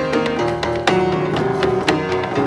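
Upright piano played with held chords and a bass line, while the player's hand slaps the wooden front of the piano case as a snare-drum-like beat. The sharp slaps fall about once a second over the piano notes.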